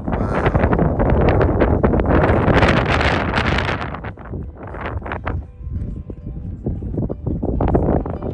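Wind buffeting a phone's microphone in uneven gusts, heaviest in the first four seconds and easing after that.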